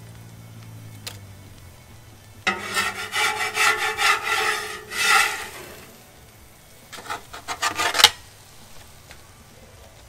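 Metal spatula scraping over metal cooking surfaces, a sheet pan and the griddle, with a ringing screech. There are two bouts of scraping, the second ending in a sharp metallic clank.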